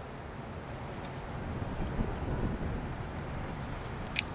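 Low, steady rumble of wind on the microphone, with a few faint soft knocks from the front brake caliper being handled and lowered back over the new pads.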